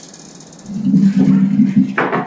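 A person's voice, low and muffled, humming or murmuring without clear words, starting a little over half a second in after faint room hiss.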